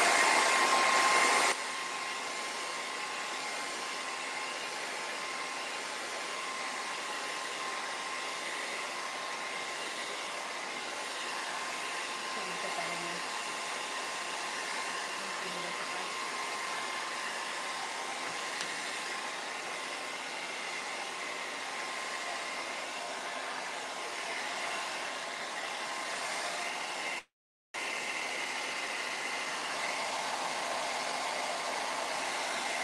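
Handheld hair dryer blowing steadily over a freshly brushed coat of glitter varnish to dry it. Its sound drops noticeably about a second and a half in and then holds steady. The sound cuts out for a moment near the end.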